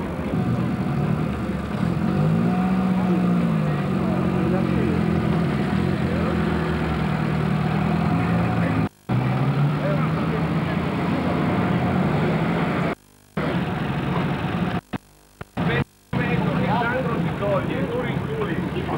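A vehicle engine running, its pitch rising and falling, with people talking around it. The sound cuts out briefly several times in the second half.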